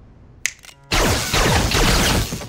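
Animated sci-fi sound effects: a sharp click about half a second in, then from about a second in a loud, dense burst of laser gunfire and electric zapping.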